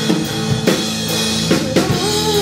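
Live rock band playing: a drum kit keeps the beat with bass drum and snare strokes under held electric guitar chords. A quick run of drum hits comes near the end, leading into a change of chord.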